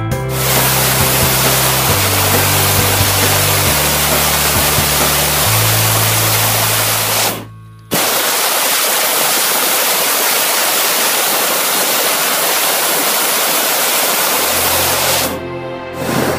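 Hot-air balloon's propane burner firing with a loud, steady rushing roar, laid under music whose bass line changes note every couple of seconds. The sound cuts out briefly about halfway through, after which the roar continues on its own without the bass notes until just before the end.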